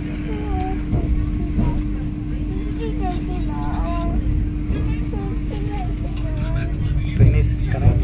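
Cabin noise inside a slow-moving Vande Bharat express train: a steady low rumble with a constant hum, under background chatter from other passengers. A thud comes a little before the end.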